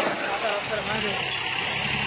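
Indistinct voices of people talking at a roadside over steady traffic and engine noise, with a sharp click right at the start.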